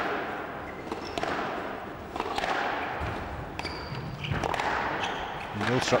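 Squash ball struck by rackets and hitting the court walls during a rally, a sharp knock about every second or so, with footwork on the court floor in a large hall.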